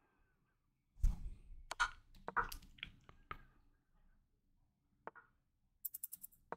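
Faint, scattered clicks and soft knocks of a computer mouse and desk handling as an online chess move is made, several in the first half and a couple more near the end.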